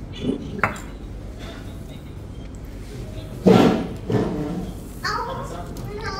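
Brief, indistinct voices, the loudest about three and a half seconds in, with a light click of a plastic spoon against a steel soup bowl early on.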